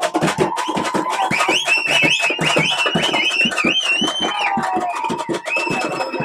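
Parai frame drums beaten with sticks in a fast, dense rhythm. A high, wavering pitched tone rides over the drumming from about a second in, breaks off near the five-second mark and comes back near the end.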